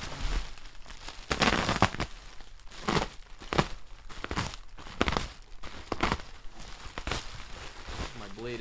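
Bubble wrap crinkling and tearing as it is cut and pulled apart with a utility knife. A longer rustle comes about a second and a half in, then short crackly bursts roughly once a second.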